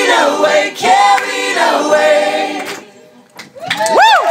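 Several voices singing together in close harmony, a sustained group phrase that ends about three seconds in. After a short pause, whoops and cheers start up near the end.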